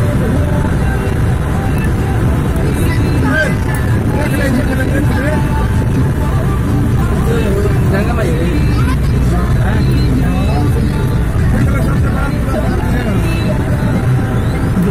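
Steady engine and road rumble heard from inside a moving road vehicle, with indistinct voices of people talking over it.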